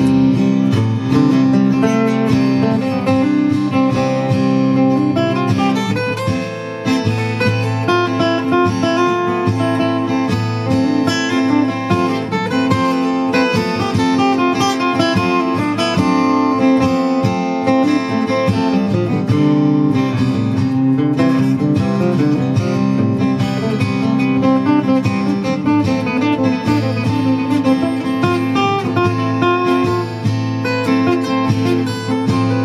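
Acoustic guitar: a looped, strummed chord progression with single-note lead lines from the A pentatonic scale played over it.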